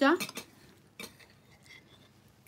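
A few light clinks of cutlery against a dish: a small cluster just after the start, one sharper clink about a second in, then faint ticks.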